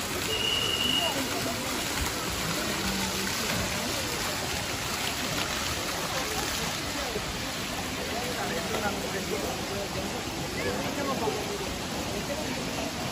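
Fountain jets splashing into a shallow pool, a steady rush of falling water, with people chattering in the background.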